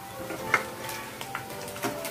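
Steel slotted spoon clicking against a kadhai several times as it turns cauliflower pakoras deep-frying in hot oil, with the oil sizzling, over background music.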